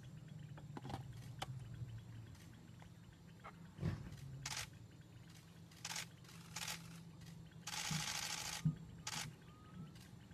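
Camera shutters clicking in short bursts, with a run of rapid shutter clicks lasting about a second near the end, over a faint steady low hum.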